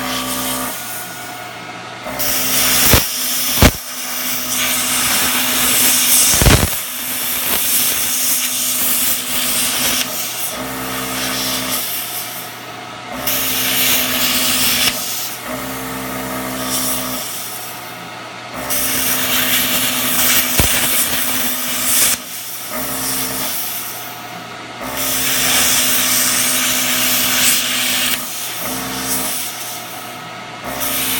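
Plasma cutter arc hissing loudly in stretches of several seconds that keep cutting out and restarting, with a steady electrical hum beneath. The stopping comes from a poor ground on the rusty hinge. A few sharp clicks sound early on the arc starts.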